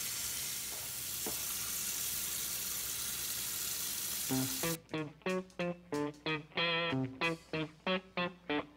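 Tap water running steadily into a stainless steel sink, an even hiss, until it cuts off abruptly about four and a half seconds in. Plucked guitar music of separate notes begins just before the cut and carries on.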